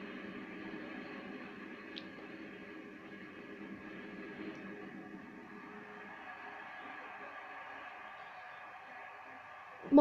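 Television sound of a wrestling broadcast playing in the room: a steady mix of arena noise and voices, a little quieter after about six seconds.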